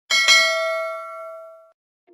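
A notification-bell ding sound effect: a bell chime that starts suddenly and rings out, fading away over about a second and a half.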